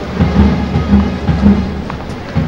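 Rain and a heavy, steady low rumble on outdoor microphones, with music faintly underneath.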